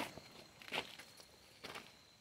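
Faint footsteps on gravel and fallen leaves, two soft steps about a second apart.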